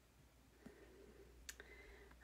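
Near silence with two faint sharp clicks from a camera mount being handled and set in place, the second, about one and a half seconds in, the louder.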